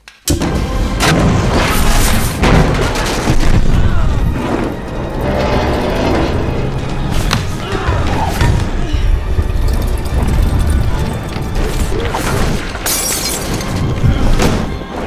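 A sudden gas explosion bursts in just after the start, followed by a sustained loud rush of noise with scattered impacts, all under film score music.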